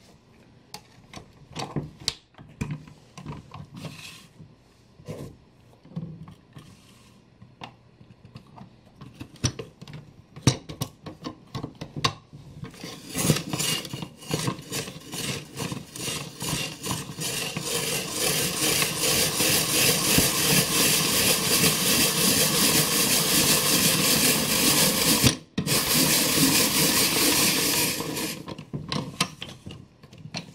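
Hand-cranked vegetable spiralizer cutting a raw sweet potato into spiral strands: a loud, fast, rhythmic rasping scrape that starts about halfway through and stops for a moment shortly before the end. Before it come scattered clicks and knocks as the potato is fitted onto the spiked holder.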